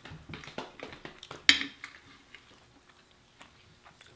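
Crispy fried chicken being pulled apart and chewed close to the microphone: a run of short crunchy clicks, the loudest about one and a half seconds in, then quieter chewing.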